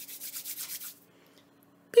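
A plastic cookie stamp scraping against the inside of a plastic cookie cutter as it is pushed down into the dough: a quick run of fine rubbing strokes lasting about a second, then quiet.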